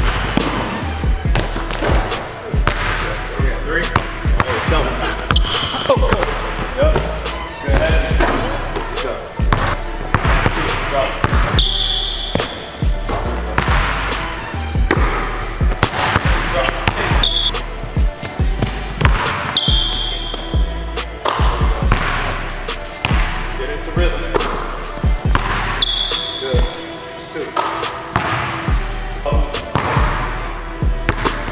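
A basketball being dribbled on a hardwood court: many quick bounces in uneven runs. It plays over background music with a heavy bass.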